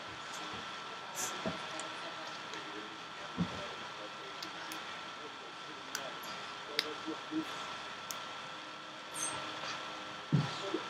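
Quiet room tone: a steady hiss with a thin high whine, broken by a few soft clicks and rustles from hands working a hair elastic onto a small child's pigtail.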